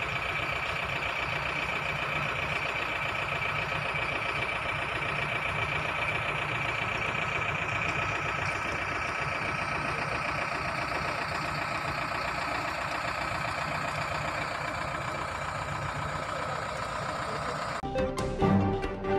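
A steady engine-like mechanical running noise at an even level, cutting in and out abruptly.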